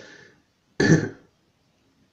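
A man's single short, harsh cough, a throat-clearing cough about a second in.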